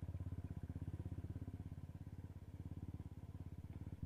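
Motorcycle engine running at low speed as the bike is ridden slowly, an even, rapid low beat, about ten pulses a second, holding steady throughout.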